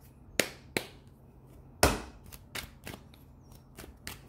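A tarot deck being shuffled and handled: separate sharp snaps and taps of the cards, three strong ones in the first two seconds, the loudest about two seconds in, then a patter of lighter ticks.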